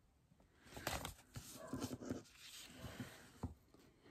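Faint rustling and light taps of a paper sticker sheet being handled and set down on a planner.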